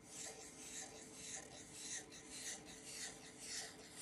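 Faint scratching of a Sharpie felt-tip marker drawn across paper in short repeated strokes, about two a second, as a row of small loops is inked.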